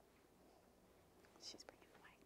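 Near silence: room tone, with a faint breathy sound and a few soft clicks about a second and a half in.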